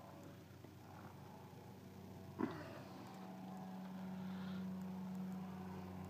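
A faint, steady low hum that grows a little louder after about three seconds, with a single sharp knock about two and a half seconds in, as of an overhead wooden cabinet door being shut.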